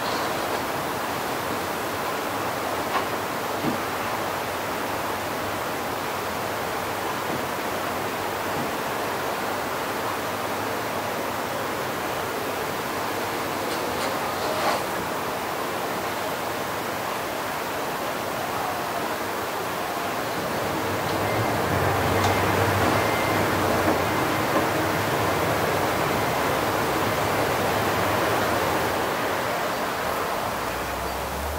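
A steady rushing noise that grows a little louder about two-thirds of the way through, with a low hum joining it.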